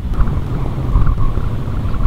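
Wind rumbling and buffeting against the microphone, an uneven low rumble.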